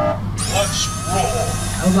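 Remote-controlled transforming Optimus Prime toy truck driving across the floor, its small electric motors giving a steady high whine for about a second and a half.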